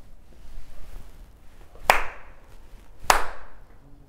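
Two sharp handclaps about a second apart, each with a short ringing tail: the two claps (kashiwade) of Shinto shrine worship, made between the bows of a prayer.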